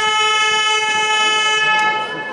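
Basketball arena buzzer sounding one long, loud buzz of about two seconds during a stoppage in play, the timing signal from the scorer's table.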